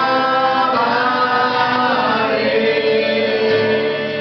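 A woman and a man singing a slow worship song together to acoustic guitar, holding long sustained notes, the last one stretched over about two seconds.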